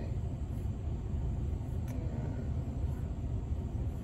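Steady low rumble with no clear pitch, with one faint click about two seconds in.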